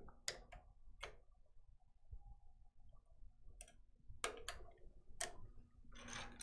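Plastic thread feed roller covers on a Melco EMT16X embroidery machine clicking as they are rocked and snapped into place. A few faint, sharp clicks spread through, some coming in quick pairs.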